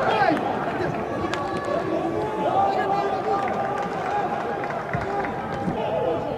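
Footballers shouting and calling to each other on the pitch, several voices overlapping, heard clearly with no crowd noise in an empty stadium, with a sharp knock of the ball being struck once or twice.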